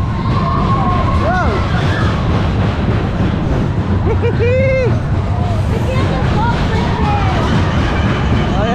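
Superbob fairground ride running at speed: a loud, steady low rumble of the cars travelling round the track, with a few short shouts from riders over it.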